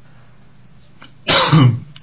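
A man clears his throat with one short, loud cough-like burst about a second and a half in, after a quiet pause.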